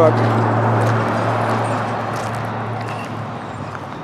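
Traffic noise from a busy road: a passing vehicle, loud at first and fading steadily as it moves away. Its low engine hum dies out about three seconds in.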